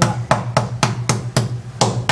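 A metal meat tenderizer mallet pounding thin slices of beef on a wooden cutting board, in quick repeated blows of about four to five a second, tenderizing the meat.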